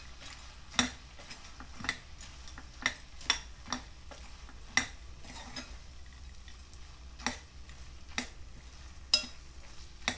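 Metal spatula stirring a thick masala of boondi and paneer in a coated pot: soft scraping with about a dozen sharp, irregular clinks of the spatula against the pot.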